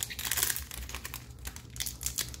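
Foil booster-pack wrapper crinkling and crackling in the hands in irregular little bursts as the pack is worked open.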